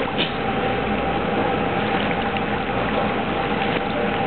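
Steady rush of running water in a swimming pool, with a constant hum underneath.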